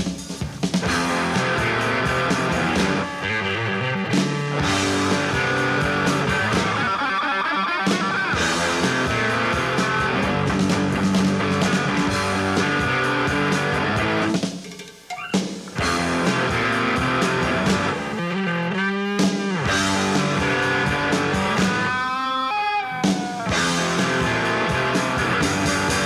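Rock band playing, with electric guitar and drum kit. There is a short break about fifteen seconds in, and pitch-bending lead lines near the end.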